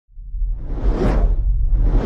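Whoosh sound effects of an animated logo intro, over a deep rumble: one swell peaks about a second in and a second builds near the end.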